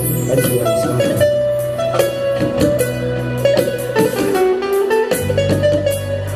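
Instrumental break from a live wedding band: a keyboard melody over a sustained bass line, with frame-drum and hand-drum beats. The bass drops out for about a second near the end and comes back.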